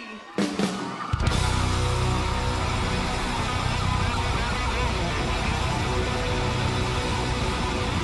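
Live rock band with electric guitar kicking in about a second in and holding a loud, sustained vamp with heavy bass.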